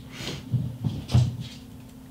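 Cats moving about off-camera: two muffled bumps, like a cupboard door knocked, about half a second apart.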